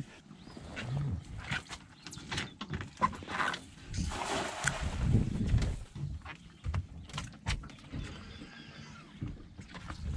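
A cast net thrown from a boat: knocks and rustles as it is handled, then a short noisy splash as it lands on the water about four to five seconds in.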